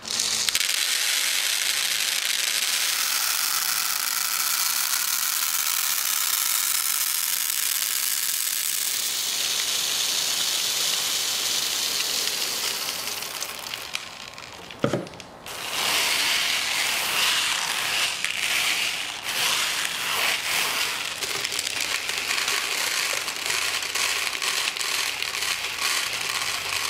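Thousands of plastic airsoft pellets pouring out of a jar onto a wooden tabletop: a steady rattling rush that thins out and stops about thirteen to fifteen seconds in. Then a dense run of scattered clicks as the pellets are pushed about by hand and tipped off into a plastic bucket.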